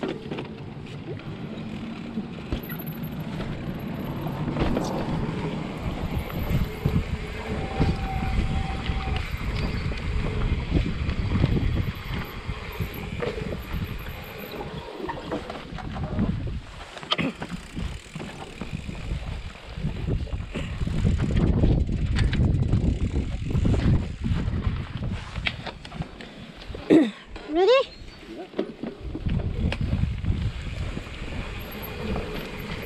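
Wind buffeting an action camera's microphone while riding a mountain bike, with rolling tyre and bike noise rising and falling unevenly. A short run of rising squeaks sounds near the end.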